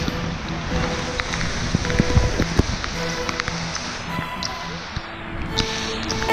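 A mountain bike riding a wet, muddy trail: steady rushing noise on the microphone, with scattered knocks and rattles from the bike going over bumps. Faint background music runs underneath.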